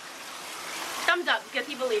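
A steady hiss, then a woman starts speaking about a second in.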